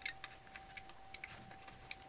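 Faint, irregular small clicks and ticks of a metal loom hook and rubber bands working against the plastic pegs of a Rainbow Loom, as the bands are hooked and lifted from peg to peg.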